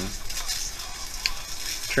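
Hissing, sizzling high-voltage arc of an audio-modulated flyback transformer plasma speaker, running steadily. The hiss comes from the arc's crude contacts, two nails that give a poor break-up point.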